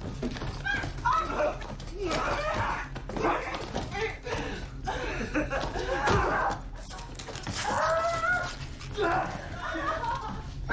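Wordless human vocal sounds, cries and gasps, repeated throughout, over a low steady hum.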